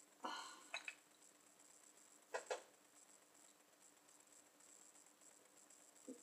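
Near silence: room tone, with a few faint short sounds in the first second and a faint double click about two and a half seconds in.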